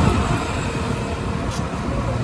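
Steady outdoor background noise with a strong, uneven low rumble and no distinct events.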